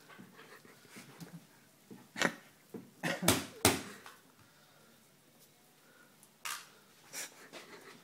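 A person struggling to pull free of tape bound round the wrists, with several short, sharp puffs of breath and rustling; the loudest two come close together a little past three seconds in.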